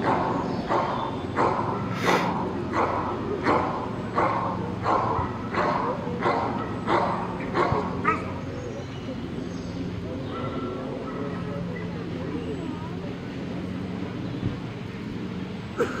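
Belgian Malinois barking steadily and rhythmically at a helper in a bite suit, about three barks every two seconds, as it holds him in the guarding exercise. The barking stops about halfway through.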